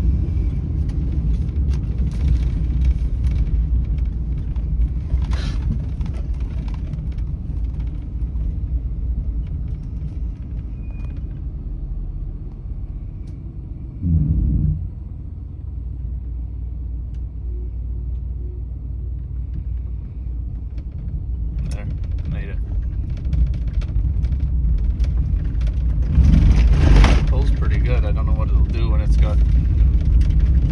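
Vehicle engine running with a steady low rumble while towing a welded steel-pipe frame on skids along the road. There is a short louder surge about halfway through and louder clattering and knocks near the end.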